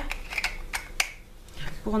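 A few sharp plastic clicks and taps, about four within the first second, from handling a handheld electric foot file.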